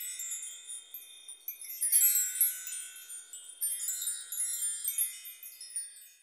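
High, tinkling chimes in several cascades, each set of notes ringing on and decaying, fading out near the end.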